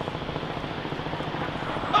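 A steady low hum over even outdoor background noise, with no distinct event.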